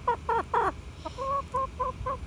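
Hens clucking: a few short falling calls in the first half, then a quick run of about five short, even-pitched clucks.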